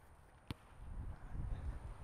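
A single sharp knock about half a second in, a football being kicked on grass, followed by a faint low rumbling noise.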